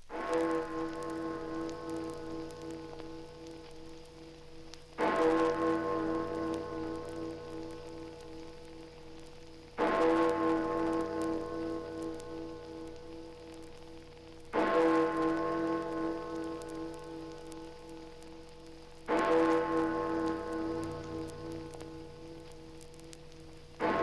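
Big Ben's hour bell striking the hour, six of its twelve strokes here, one about every five seconds, each ringing on with a pulsing hum as it fades. Played from a battered 78 rpm record, with surface crackle throughout.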